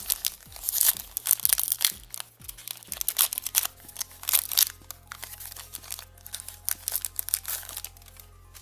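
Foil-lined plastic wrapper of a Pokémon booster pack crinkling and tearing as it is pulled open by hand, a long run of sharp crackles that stops just before the end.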